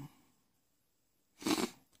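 A person's short, loud, breathy exhale about one and a half seconds in.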